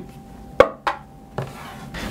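Three short knocks, like something set down or tapped on a table, spread over about a second; the first is the loudest. Under them runs a faint steady hum.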